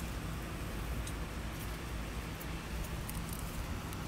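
Steady low hum and background noise, with a few faint clicks.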